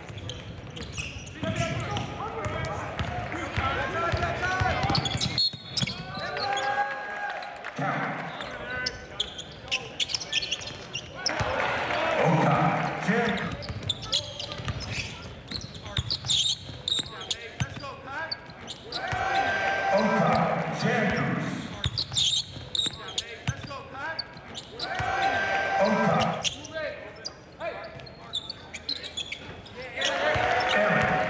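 A basketball being dribbled on a hardwood court during live game play, with players' and spectators' voices in the gym.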